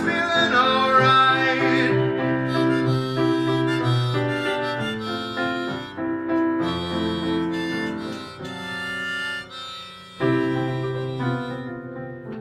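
Steinway grand piano playing sustained chords of a ballad's instrumental passage, after a sung note with vibrato that fades out over the first two seconds. The piano dips quieter near ten seconds in, then a new chord sounds loudly.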